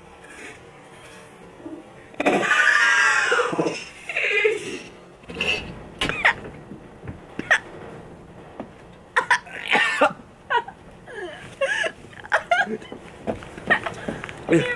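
Coughing and gagging from people choking on dry pre-workout powder that burns the throat and goes up the nose. A loud, strained gag comes about two seconds in, followed by a string of sharp coughs.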